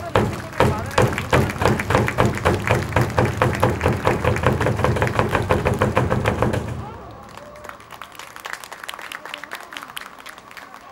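Stadium cheer percussion: a loud, fast, even run of beats over a deep bass that stops abruptly about seven seconds in.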